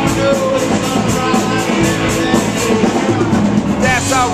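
Live rock band playing loud electric guitar and drum kit, with a quick, steady beat of cymbal strokes; a voice comes in near the end.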